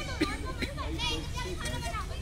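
Children's voices speaking and calling out in high pitch, several at once, over a steady low hum.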